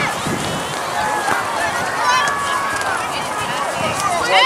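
Overlapping distant shouts and calls from players and sideline spectators across an outdoor soccer field, too far off to make out, with one long drawn-out call about a second in, over steady outdoor noise.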